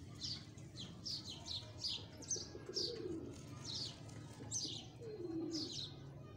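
Small birds chirping over and over, short high chirps about twice a second, with a pigeon cooing low twice, once about two and a half seconds in and once near the end.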